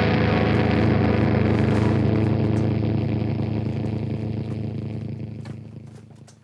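The band's last low distorted note from the electric guitar and bass amplifiers, held as a steady drone and fading out over the last few seconds.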